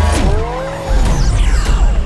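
Film car-chase sound effects: car engines and squealing tyres over trailer music, with gliding pitches in the first second and a heavy low rumble setting in about a second in.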